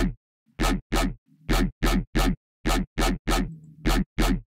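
Wonky dubstep bass synth patch in Serum playing about ten short, choppy stabs in uneven groups of two and three, each with a deep sub and a bright, gritty top, run through a phaser set to heavy feedback.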